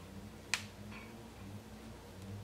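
A single sharp click about half a second in, then a fainter tick, as hands twist and pin hair at the nape; a low steady hum lies underneath.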